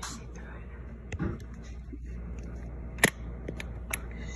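A few sharp clicks and knocks of handling at a hotel room door, the loudest about three seconds in, over a steady low room hum.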